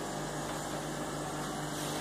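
Steady machine hum: a low, constant tone under an even hiss, with no changes or distinct events.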